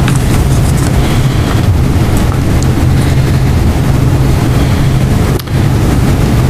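Steady rushing background noise with a low hum underneath, dipping briefly near the end.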